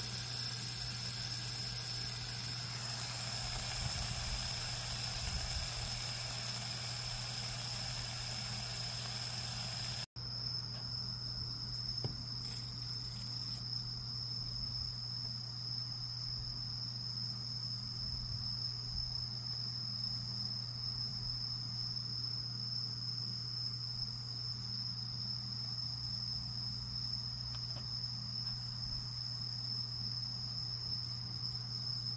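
A steady, high-pitched chirring of crickets over a low hum. For the first ten seconds a sizzling hiss of meat grilling lies over it. A sudden cut about ten seconds in leaves only the crickets and the hum.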